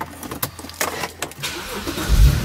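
Several sharp clicks and knocks from a hand working the controls in a car's cabin, with a low rumble rising near the end.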